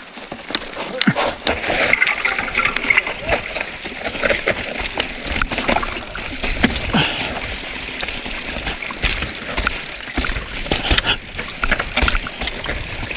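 Mountain bike riding down a rocky dirt trail: a steady rush of tyre and air noise, broken by many sharp knocks and rattles as the bike hits rocks and bumps.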